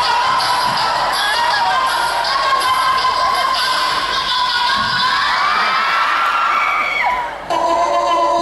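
Music with a steady beat playing loudly through a hall's sound system, with an audience cheering and shouting over it; the sound dips briefly near the end.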